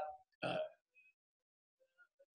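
A man's voice: the end of a word, then a short hesitant "uh" about half a second in, then a pause with almost no sound.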